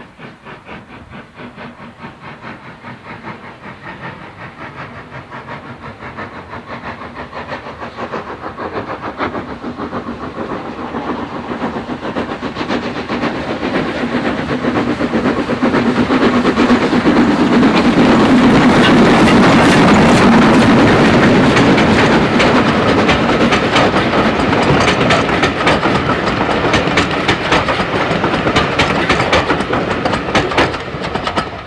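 Steam locomotive SDJR 7F 2-8-0 No. 53808 working a train, its regular exhaust beats growing steadily louder as it approaches and loudest as it passes close by, a little past halfway. Near the end the coaches' wheels clatter over the rail joints.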